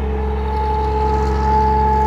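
Bedford RLHZ Green Goddess fire engine's 4.9-litre straight-six petrol engine running steadily while it drives the fire pump under pressure. It is a deep, even drone with a steady high-pitched whine over it.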